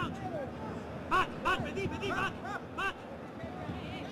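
A run of short, rising-and-falling shouted calls from men's voices, about three a second for a couple of seconds, over the steady background noise of a stadium crowd at a football match.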